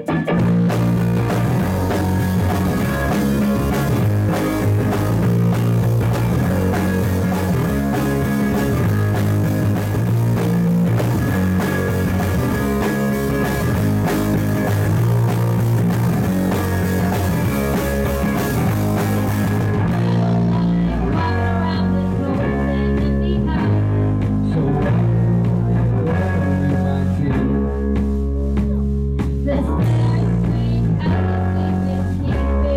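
Live band playing the opening of a rock song on acoustic and electric guitars, steady and loud. About twenty seconds in the bright, hissy top of the sound falls away and the lower parts play on.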